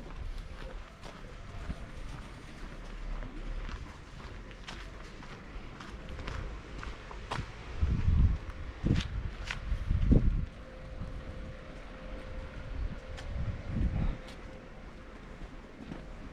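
Footsteps on a cobblestone street, a steady series of short shoe clicks at walking pace, with a few louder low bumps around the middle and near the end.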